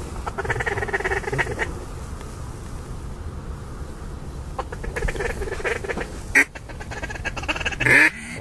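Ducks quacking: three runs of repeated quacks, with a sudden loud burst about six and a half seconds in.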